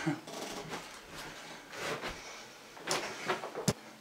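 Rustling and knocking of a person shifting about, with a sharp click near the end.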